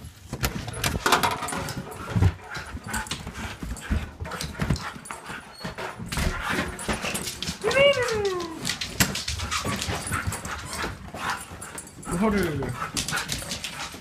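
Husky vocalizing in whining, howl-like calls: one long call falling in pitch about eight seconds in and another falling call near the end, amid frequent clicks and scuffles.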